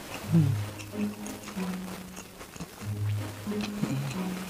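A man's closed-mouth humming, a low "mmm" in several drawn-out notes with short slides in pitch, over chewing of crispy fried squid with small crunches and mouth clicks.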